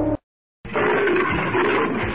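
Music cuts off, and after a half-second gap a big-cat roar sound effect starts, dubbed over a tiger figure. A few low thuds sound beneath it.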